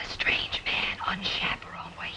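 Whispered speech: a woman whispering quickly to a man, breathy and without voice.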